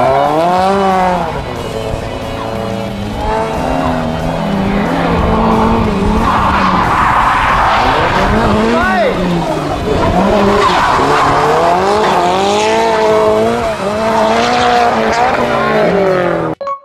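Nissan Silvia S14 drift car sliding through a corner, its engine revving up and down over and over as the rear tyres spin and squeal. The tyre squeal swells in the middle and again near the end.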